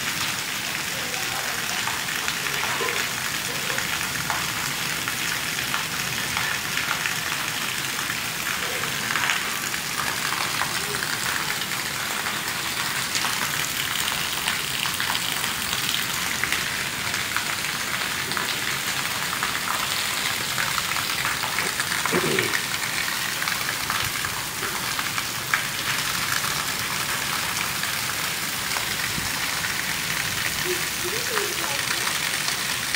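Heavy downpour: a steady hiss of rain on a paved courtyard, with water pouring off a roof edge and splashing onto the tiles.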